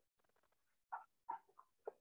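A few faint short squeaks of a felt-tip marker writing on paper, coming in the second half amid near silence.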